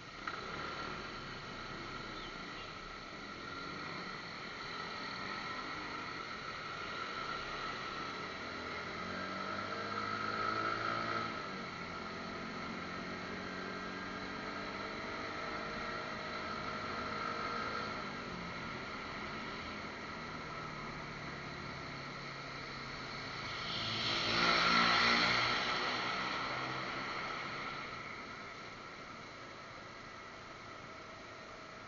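Motorcycle engine running under steady wind and road noise, heard through a helmet-mounted action camera's microphone. The engine pitch climbs as the bike accelerates about a third of the way in and again a little later, and a louder rush of noise swells and fades near the end.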